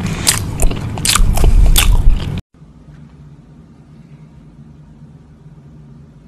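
Loud, crackly close-up crunching and chewing of food held right against a microphone. It cuts off suddenly about two and a half seconds in, leaving only a faint low hum.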